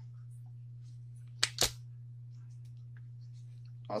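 Two sharp clicks about a fifth of a second apart, roughly a second and a half in, from the handles and jaws of a Vise-Grip self-adjusting wire stripper being worked in the hand, over a steady low hum.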